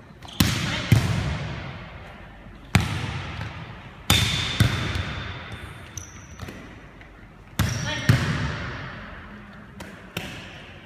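A volleyball being struck in a passing drill: about seven sharp smacks, mostly in pairs about half a second apart (a hit, then a forearm pass). Each smack rings out in a long echo across the large, empty gym.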